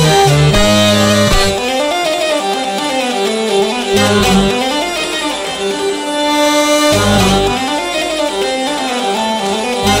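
Hurdy-gurdy and chromatic button accordion (bayan) playing a three-time bourrée live. The low bass notes come and go, dropping out for stretches under the continuing melody.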